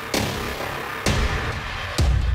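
Electronic music loop processed live by the iZotope Stutter Edit plugin, switching abruptly about once a second as MIDI notes trigger different stutter and filter gestures; the deep bass drops out in the first second and comes back after.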